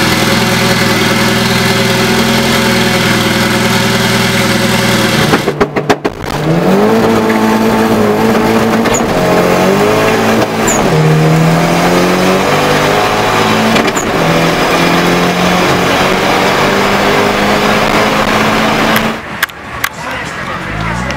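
A turbocharged car engine running steadily for about five seconds. After a short break, a car engine heard from inside the cabin accelerates hard, its pitch climbing and then dropping at each gear change, several times over.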